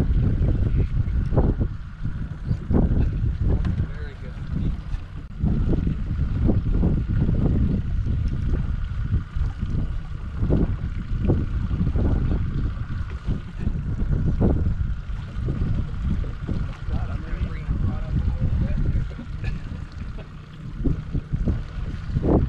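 Wind buffeting the microphone on an open fishing boat: a loud, uneven low rumble. A faint steady high whine runs from about five seconds in until about sixteen seconds.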